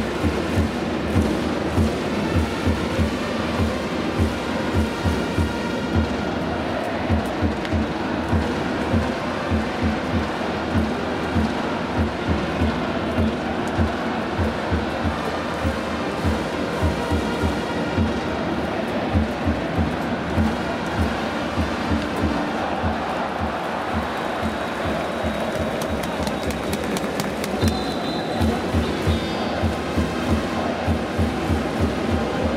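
Baseball cheering-section music: a drum beating in a steady rhythm, about two beats a second, over continuous crowd noise in the stadium.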